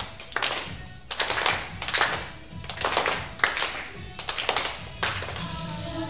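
A group clapping hands in rhythm, roughly one clap or pair of claps a second, over quiet backing music between sung lines of a song.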